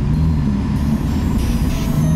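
Ferrari F8 Spider's twin-turbo V8 running steadily at low cruising speed, heard from inside the open-top cabin, with a slight rise in pitch near the end.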